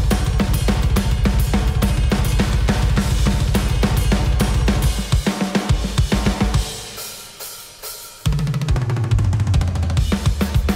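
Playback of a final mixed metal drum stem: a fast, dense kick-drum pattern under snare and cymbals. The playing thins out about five seconds in, drops to a much quieter stretch of a second and a half, then comes back in hard just after eight seconds.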